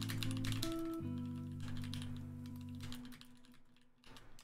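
Typing on a computer keyboard, clusters of quick key clicks, over background music with sustained notes that fades out about three seconds in.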